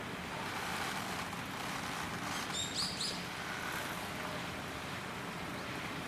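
Steady outdoor background with a few short, high bird chirps about two and a half to three seconds in.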